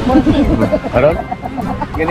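A group of men laughing and talking, with music playing in the background.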